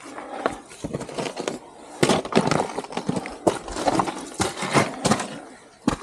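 Gloved hands and boots scraping, knocking and shuffling on rock while climbing, close to the microphone: a busy, irregular run of short scrapes and clicks.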